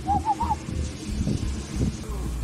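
A small dog giving three short, quick whining hoots near the start, each rising and falling in pitch, answering its owner's coaxing. Low rumble and rustling of the phone being handled against the dog follow.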